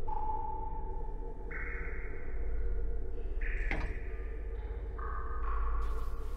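Suspense film score: a steady low drone under a run of sustained electronic tones that jump to a new pitch every second or so. One sharp click comes about two-thirds of the way through.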